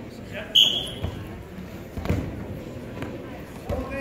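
Dull thuds of wrestlers hitting a gym mat over a murmuring crowd, with a brief, loud high-pitched call about half a second in.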